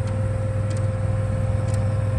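Steady idle hum of a parked Ford F-550 bucket truck, with its 6.7-litre turbo-diesel V8 and its on-board gasoline generator both running. A low drone carries a fixed higher whine and does not change.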